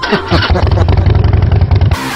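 1967 Honda CT90's small single-cylinder four-stroke engine running as the bike is ridden, a rapid low pulsing of its exhaust.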